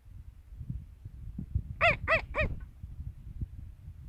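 A sheep bleating in three short, quick, rising-and-falling notes about two seconds in.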